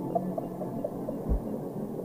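Ambient electronic music: sustained low synth drones with short plinking notes scattered over them, and one deep bass thud a little past halfway.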